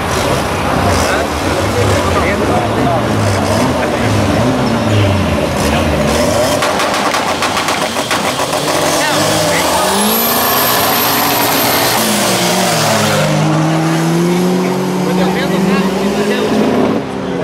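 Drag-race cars' engines at a dirt-strip start line: revving in bursts at first, then about halfway through running at full throttle, the engine note climbing in steps as they accelerate down the track.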